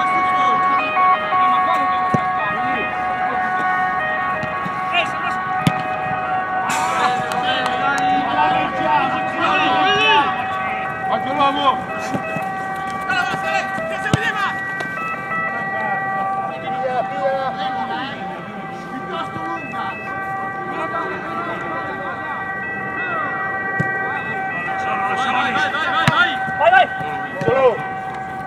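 Players' voices shouting and calling across a football pitch during play, heard over a steady high whine made of several held tones.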